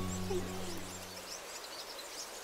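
The last sustained chord of background music fades out over about the first second, while small birds chirp throughout.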